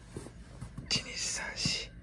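A person counting softly in a whisper, a few breathy syllables near the end, keeping time for a knee-exercise hold.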